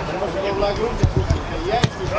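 Footballers shouting to each other, with a few dull thumps of the ball about a second in and one sharp kick of the ball near the end.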